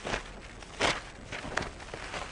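Bible pages being turned: a few short papery rustles, the loudest just under a second in.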